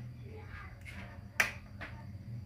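Sharp click of a Polytron CRT television's front power push-button being pressed, about two-thirds of the way through, with a few fainter clicks around it over a low steady hum.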